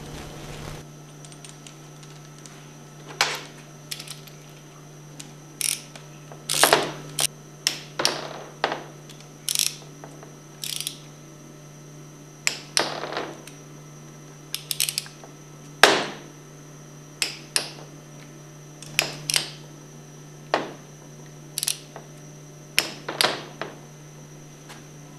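Ratchet and torque wrench tightening the allen head bolts on a Hypro 2400 Series plunger pump's brass head to 170 inch-pounds: sharp metallic clicks, irregularly spaced, some in quick pairs and clusters.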